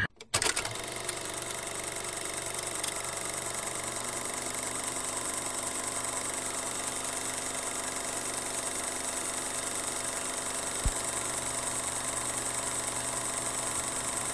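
A steady mechanical whir with hiss, like a film projector running, starting a moment in and holding an even level, with a single low thump near the end.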